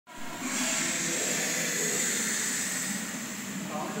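Steady, loud hissing played as a snake-hiss sound effect in a snake-god diorama. It starts about half a second in, with faint voices beneath it.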